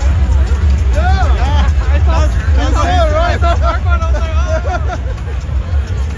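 Dense street crowd chattering and calling out, with several raised voices about a second in and again from the middle on, over amplified music with a heavy bass.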